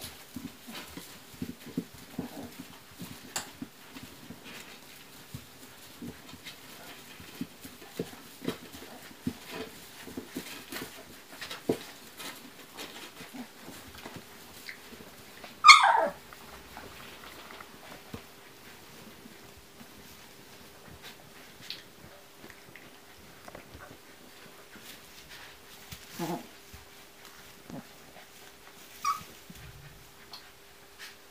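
Young Siberian husky puppies shuffling and nursing in hay, with soft rustling and small squeaks. About halfway through one puppy gives a single loud yelp that drops sharply in pitch.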